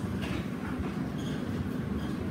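A steady low rumble of background room noise, with nothing else standing out.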